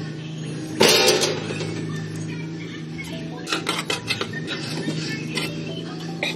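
Metal spoons clinking and scraping against a plastic tub and a metal baking tray as tomato sauce is spooned and spread onto pizza dough, with a louder clatter about a second in and a few sharp clinks later, over background music.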